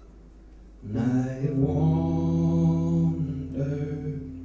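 Live folk music: an accordion swells in with a loud held chord about a second in, a lower bass note joins it half a second later, and it eases briefly near the end before sounding again.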